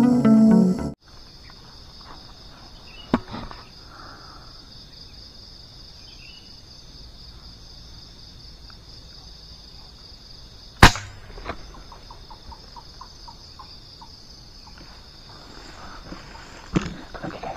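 A steady, high-pitched drone of insects in the undergrowth, after a burst of music that cuts off about a second in. About eleven seconds in a single sharp crack of a shot is the loudest sound, followed by a few faint rapid ticks.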